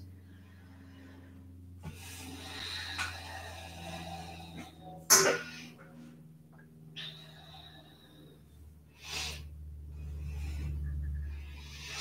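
A woman's quiet, slow breathing while she holds a seated twist, long soft breaths a few seconds each, with one short sharp breath about five seconds in. A faint low hum underneath.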